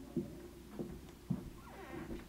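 Dull thuds about twice a second, typical of a neighbour's footsteps heard through the floor or wall, over a steady low hum. Near the end, a short pitched sound with a gliding tone.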